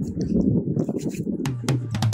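Wind buffeting the microphone, a steady low rumble. About one and a half seconds in, drum-kit music begins with sharp kick and snare hits over a bass line.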